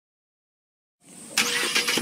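Subaru Impreza WRX's turbocharged flat-four being started: about halfway in, the starter cranks with a short rising whine, and the engine catches just at the end.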